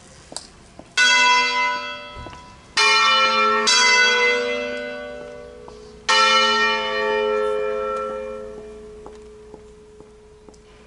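Church bells from a ring of five wheel-mounted swinging bells in A, rung as a slow funeral peal. Four separate strokes from different bells fall over the first six seconds, each left to ring out and fade.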